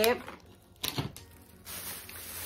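A few sharp clicks of plastic packaging being handled about a second in, then a plastic shopping bag rustling as a hand rummages in it.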